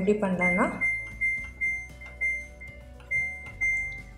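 Samsung top-load washing machine control panel beeping at each press of the Cycle button: a run of short, high beeps at one pitch, about two a second, as the cycle selection steps along to Eco Tub Clean.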